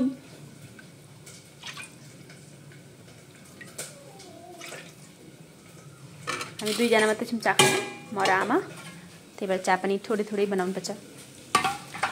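A metal ladle stirring a thick mixture in a metal pan, with a few faint clinks and knocks against the pan in the first half. From about halfway in, a person talks over it.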